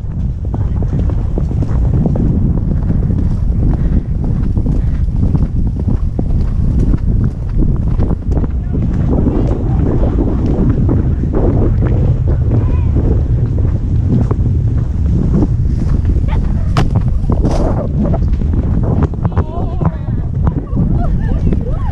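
Wind buffeting a helmet-mounted action camera's microphone with a heavy rumble, while a horse canters along a dirt trail and its hoofbeats thud through it.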